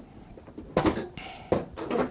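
Plastic carbonating bottle being unscrewed and tilted out of a SodaStream sparkling water maker: a few sharp plastic clicks and knocks, with a short hiss just after a second in.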